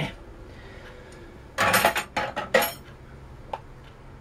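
Hand tools being put away, clattering with a few sharp metal knocks about one and a half to two and a half seconds in, then a single light click near the end.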